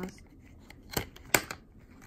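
Two sharp plastic clicks about a second in, a third of a second apart, the second one louder, followed by a faint tick: cosmetic packaging in clear plastic cases being handled and set down among other makeup on a tray.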